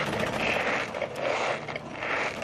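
Chuck E. Cheese ticket counting machine (the "ticket muncher") drawing a strip of paper tickets through its feed roller, a rapid, steady mechanical chatter of clicks.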